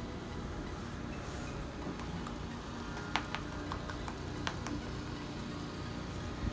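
Damp makeup sponge dabbed against the face, heard as a few faint soft clicks about halfway through, over quiet room tone with a low steady hum.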